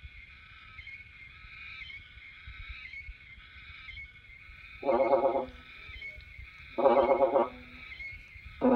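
Hmong raj nplaim, a free-reed bamboo pipe, blown in two short, wavering notes about five and seven seconds in, over a steady high-pitched background drone.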